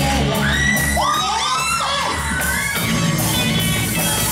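Rock band playing live with electric guitars and drums, loud and amplified, while high-pitched shouts and screams from a crowd rise over it from about half a second in to nearly three seconds in.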